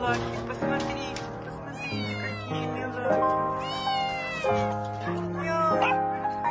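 Cats meowing: two drawn-out meows, falling in pitch at the end, about two and four seconds in, over steady background piano music.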